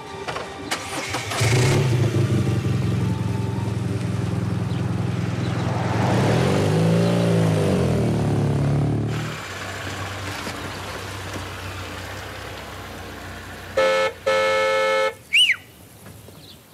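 A small motorcycle engine starts up and runs, revving up and back down, then cuts off abruptly. A car engine then idles quietly, and a car horn sounds twice near the end, the second blast longer.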